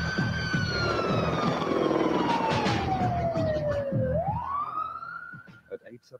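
A siren wailing: one long, slow fall in pitch over about four seconds, then a quick rise back up, fading near the end.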